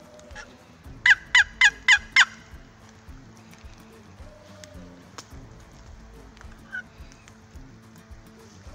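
Wooden turkey box call played in a quick run of five loud yelps, about four a second, each dropping in pitch, with one faint short note later on.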